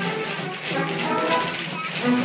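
Ensemble tap dancing: many tap shoes striking the stage floor in quick, even rhythm over accompanying show music.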